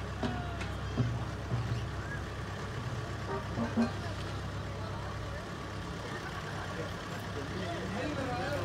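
Farm tractor's diesel engine running at a slow, steady pace, a low hum that eases off slightly partway through, with scattered voices of the crowd over it.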